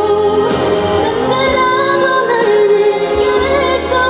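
A woman singing a song live into a handheld microphone, holding long notes with vibrato, over a live band with drums, amplified through a concert sound system.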